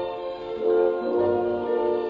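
Orchestral music: sustained chords swelling and changing, heard through an old radio broadcast recording with the treble cut off.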